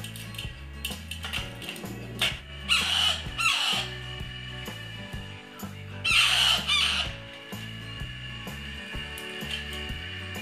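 Baby parakeet chicks giving loud begging squawks as they are spoon-fed, a pair of calls about three seconds in and another about six seconds in. Background music with a steady low bass runs underneath.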